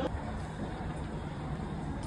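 Steady low rumble and hiss of background noise with a faint hum, the kind of indoor ambience heard in an airport jet bridge.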